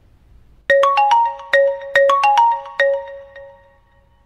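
Smartphone ringing with an incoming call: a short melody of quick chiming notes, starting under a second in and fading out near the end, then beginning to repeat.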